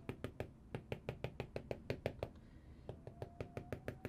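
Apple Pencil tip tapping rapidly on an iPad's glass screen, several light taps a second, as colour splatters are dabbed onto the canvas.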